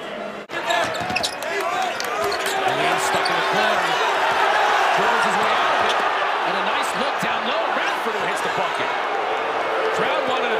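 Arena game sound from a college basketball game: a steady crowd noise that swells in the first couple of seconds, with sneakers squeaking and the ball bouncing on the hardwood court.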